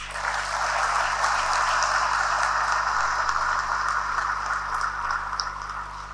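An audience applauding: dense, even clapping from a large crowd that builds within the first second, holds, then slowly dies away near the end.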